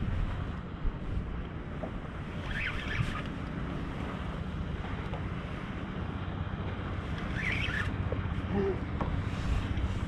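Steady wind buffeting the microphone over water lapping against a kayak, with two faint brief high-pitched sounds about three and eight seconds in.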